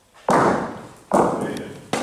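Bocce balls knocking hard: three sharp clacks less than a second apart, the first two loudest, each fading out briefly in the hall.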